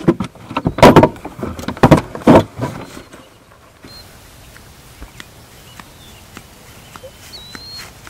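Several loud thumps and rustles in the first three seconds. Then, after a cut, a quieter outdoor background with a few short bird chirps and soft footsteps on grass.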